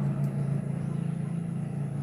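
A steady low engine hum, as of a motor vehicle running, easing off slightly toward the end.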